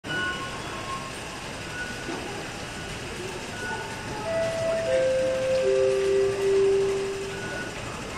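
Metro station ambience: a steady hubbub, with short high electronic beeps every couple of seconds and, from about halfway through, three long electronic tones stepping down in pitch.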